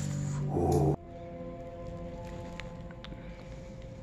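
A loud held tone cuts off suddenly about a second in. Quieter, steady ringing tones follow.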